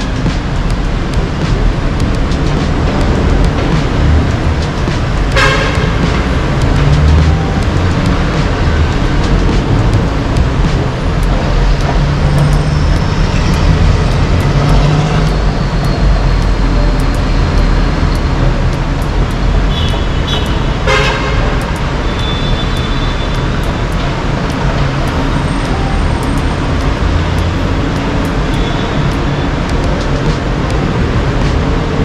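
Steady road traffic noise with a few short, high vehicle-horn toots.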